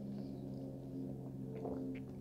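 Faint sipping and swallowing of beer from a glass, with a few small soft sounds near the end, over a steady low hum.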